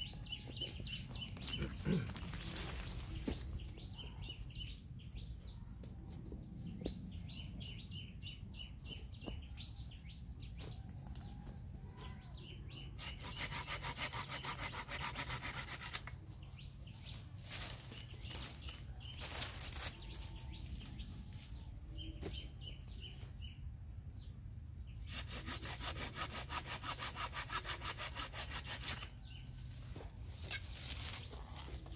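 Hand saw cutting through a bougainvillea branch in fast back-and-forth strokes, in two bouts: one of about three seconds before the middle and one of about four seconds near the end. Short bird chirps repeat in between.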